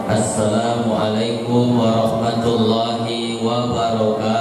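A man's voice chanting a melodic religious recitation into a microphone, in long held notes that step from pitch to pitch; this is the chanted Arabic opening of an Islamic sermon.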